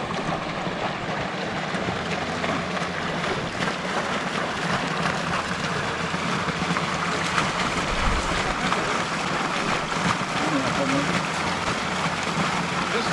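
Steady splashing of a water spout pouring into a pond, a constant even rush.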